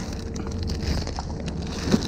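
Rustling and crinkling of the plastic wrap around a rolled inflatable paddle board as it is handled, over wind buffeting the microphone. A single thump comes near the end.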